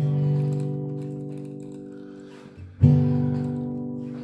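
Guitar strumming two chords, each left to ring and fade: one at the start and a second about three seconds in.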